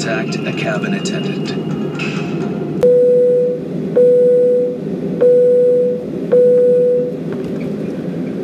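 Airliner cabin chime sounding four times: four identical steady electronic tones, each under a second long and about a second apart, over the steady rush of the cabin.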